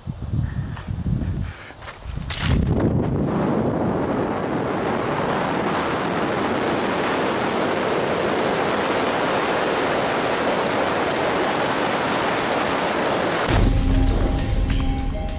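Wind rushing over a camera microphone during a BASE jump's freefall past a cliff face. After a few low gusts it starts about two seconds in and holds loud and steady. Music comes in just before the end.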